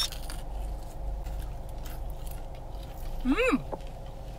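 A person biting and chewing a piece of fried sweet potato, with faint crunching, then a pleased "mm!" about three seconds in.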